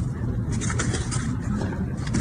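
Steady low outdoor rumble, with a few faint taps or rustles over it.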